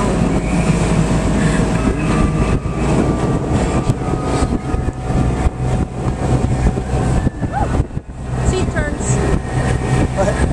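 Motorboat underway: a steady low engine drone mixed with wind and rushing water, with a brief drop in level about eight seconds in.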